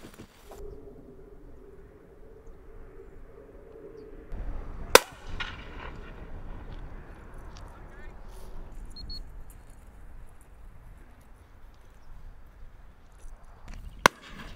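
A single shotgun shot about five seconds in, sharp and by far the loudest sound, with a short ringing tail. A faint outdoor background lies around it, and another sharp crack comes at the very end.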